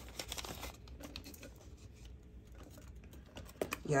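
Paper banknotes and a clear vinyl cash-envelope pocket in a ring binder being handled: soft rustling with a scatter of small light ticks, busiest in the first second.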